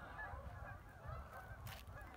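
Wind rumbling on a phone's microphone, with faint distant goose honks.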